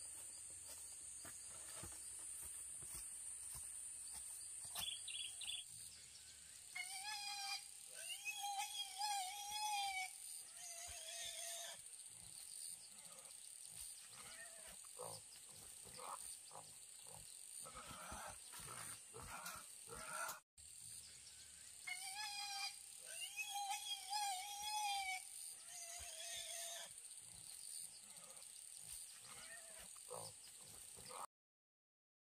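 Young wild boar squealing in two wavering calls of about three seconds each, some fifteen seconds apart, over a steady high insect drone, with rustling in between.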